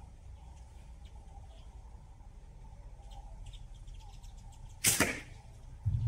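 A single slingshot shot: a short, sharp snap of the rubber bands releasing the ammo, about five seconds in. No hit on the spinner follows: the shot is a miss.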